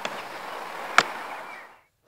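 Steady outdoor background hiss, broken by one sharp click about a second in; the hiss then fades out to silence just before the end.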